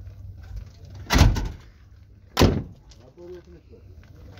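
Two heavy thumps about a second apart, the louder first, as someone climbs out of a truck cab: the metal cab door being swung and shut.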